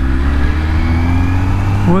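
Kawasaki ZX-10R's inline-four engine running under way, its pitch rising slowly as the bike gently gathers speed.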